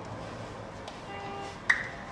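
A single sharp clap about three-quarters of the way in, standing out over faint outdoor background noise.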